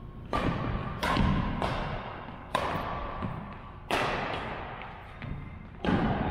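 Badminton rally: rackets striking the shuttlecock about six times, sharp hits roughly a second apart, each echoing in a large gym hall.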